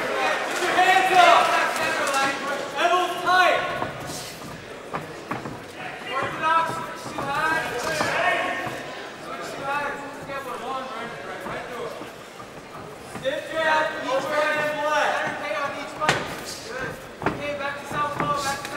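Shouting from cornermen and spectators in a large hall, in several bursts, with a few sharp thuds of strikes landing: one about four seconds in and two near the end.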